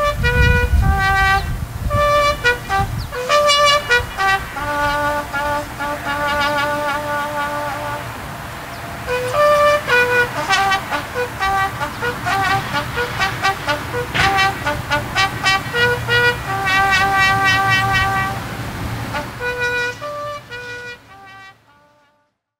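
Solo trumpet playing a slow bugle call: single held notes stepping up and down between a few pitches. It fades out near the end.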